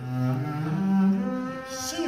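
Bowed double bass playing a short phrase of held notes that climbs in pitch, from a low note at the start to higher notes about a second in.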